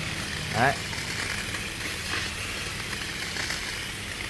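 Hot-water evaporator cleaning machine running steadily, a constant low hum with a hiss of hot water spraying through a car air-conditioning evaporator core.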